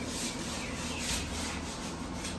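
Sweeping strokes brushing dust across a ribbed plastic floor mat, quick and regular at about three a second.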